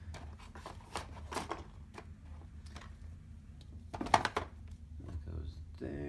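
Printed game boards being set into a black plastic box insert: a run of light knocks and scrapes, with a louder clatter about four seconds in.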